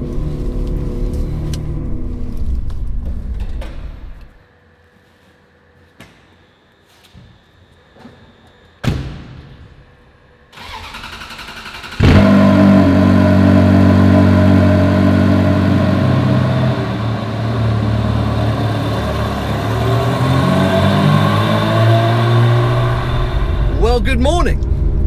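Ferrari 360's V8 running on the move, heard from inside the cabin. After a few quiet seconds with a few clicks and a sharp thud, a starter cranks for about a second and the engine catches with a sudden loud flare about halfway through, then settles into a steady idle.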